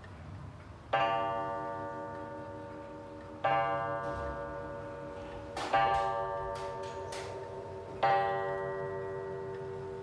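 Old Meiji pendulum wall clock striking six o'clock on its coil gong: four deep strikes about two and a half seconds apart, each ringing on and fading slowly, over the clock's faint ticking.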